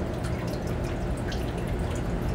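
Steady low background hiss of a small room, with a few faint light ticks as a metal pendant tray is handled with gloved fingers.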